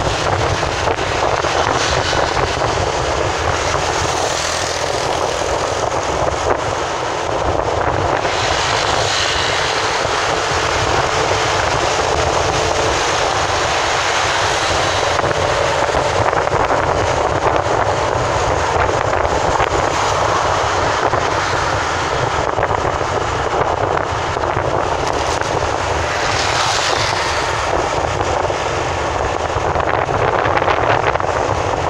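Steady drone of road, wind and engine noise from a vehicle driving at speed on a highway, swelling in places as other traffic passes close by.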